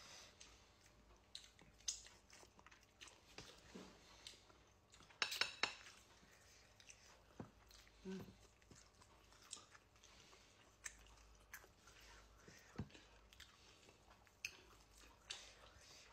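Quiet close-up chewing and biting of grilled chicken eaten by hand, with scattered short clicks from the mouth and fingers. The loudest burst comes about five seconds in.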